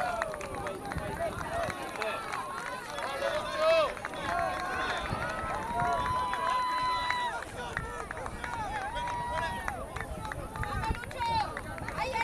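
Shouting voices of soccer players and sideline spectators carrying across an open field, many overlapping short calls, with a longer held shout about six seconds in and another near nine seconds.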